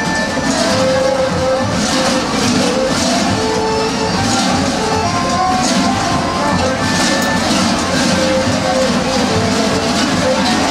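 Many large kukeri bells worn on the dancers' belts, clanging and jangling together in a steady rhythmic beat as the troupe dances.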